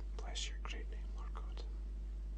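A man whispering a few words under his breath for about a second and a half, over a steady low hum.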